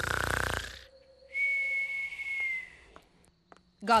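Cartoon snore from a sleeping elf: a short, rough snoring inhale, then a long high whistle on the exhale that falls slightly in pitch.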